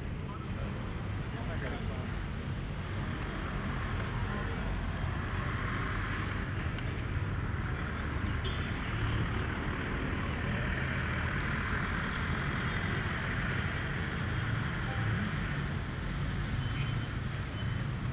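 Steady outdoor background noise: a low rumble of traffic and wind, with faint voices of passers-by. A hiss swells and fades twice.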